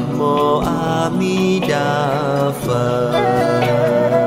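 Buddhist devotional chant music: a melodic sung line with wavering pitch over steady instrumental accompaniment.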